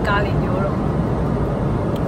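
Steady airliner cabin noise in flight, with a woman's voice speaking briefly at the start.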